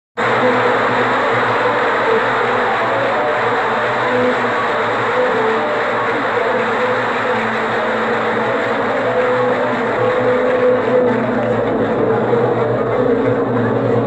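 A large concert audience applauding and stirring in a dense, steady wash, heard through an old, narrow-band recording, with a few faint brief instrument notes from the orchestra.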